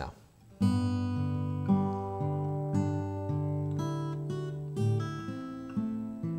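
Acoustic guitar played fingerstyle: picked chord notes that ring on over one another in a slow, even pattern, starting about half a second in.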